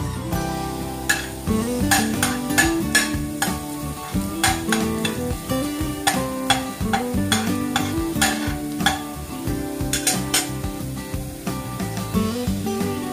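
Diced carrots and garlic sizzling in oil in a stainless steel frying pan, stirred with a spatula in irregular scrapes and taps, under background music.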